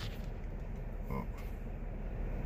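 Car engine idling at just under 1,000 rpm, a low steady rumble heard from inside the cabin, with a brief faint murmur about a second in.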